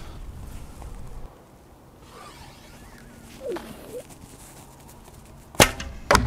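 An arrow from a 140 lb longbow strikes the wooden target with one sharp impact about five and a half seconds in, after several seconds of quiet outdoor background.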